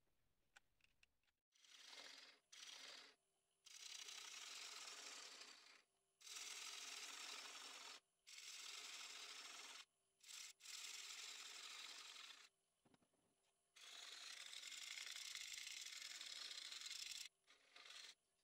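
Turning gouge cutting a spinning beech disc on a wood lathe: about six cutting passes, each a steady rushing hiss of one to three seconds, with short quiet breaks between them.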